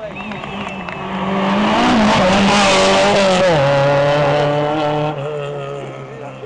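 Rally car passing at speed: the engine note builds to its loudest about two seconds in, then drops in pitch as the car goes by and fades.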